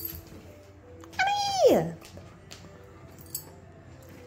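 A dog's single high whining cry, a little over a second in, held briefly and then falling steeply in pitch.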